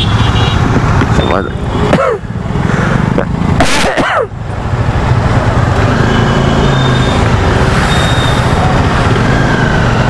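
Motorcycle running at low speed in slow, dense traffic, a steady low engine hum under a haze of wind and road noise. Brief falling sweeps in pitch come about a second and a half in and again around four seconds in.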